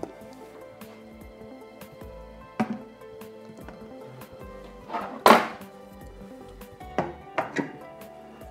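Background music, with a few light knocks and one louder thump about five seconds in, as a clear drying chamber is handled and set down over the shelf rack on the freeze dryer.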